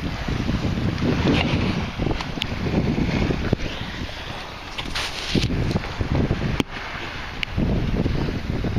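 Wind buffeting the microphone over water sloshing, with a few sharp clicks.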